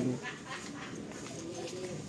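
Indistinct voices over steady background sound, with a brief louder bit of voice at the very start.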